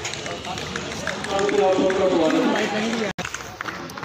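Indistinct men's voices talking, with light scattered footsteps of people walking; the sound drops out for an instant about three seconds in.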